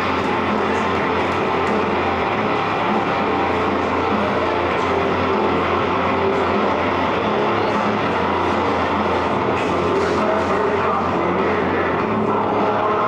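Music playing, with a steady low rumble beneath it.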